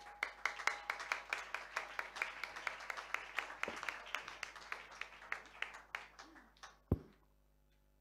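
Audience applause of many individual claps, thinning and fading out about six seconds in. Near the end comes a single sharp, low thump.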